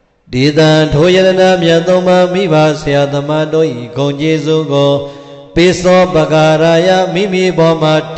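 A man's voice chanting Buddhist verses in a steady, sing-song recitation, with held notes and a brief pause about five seconds in.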